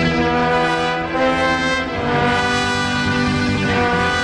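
A band playing live, with a brass section holding long notes of the melody over electric guitar and the rest of the band.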